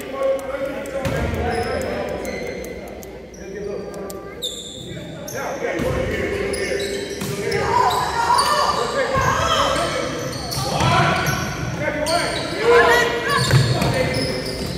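Basketball bouncing repeatedly on a hardwood gym floor during play, with voices calling out and echoing around the large hall.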